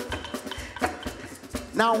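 Live band pared down to a sparse breakdown: scattered light percussion hits with little else under them. A man's voice starts to speak near the end.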